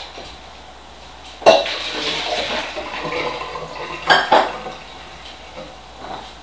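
Dishes and cutlery clattering: a sharp clatter about a second and a half in, a couple of seconds of rattling after it, then two quick knocks close together.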